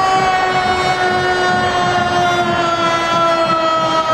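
Ice hockey arena goal horn sounding one long, unbroken blast whose pitch sinks slowly, marking a goal, over the noise of the crowd.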